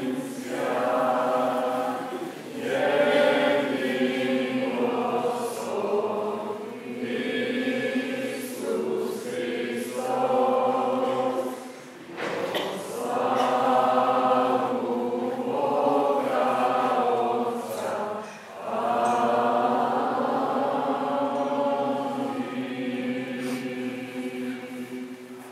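Voices singing Orthodox liturgical chant in long sustained phrases, with brief pauses between them.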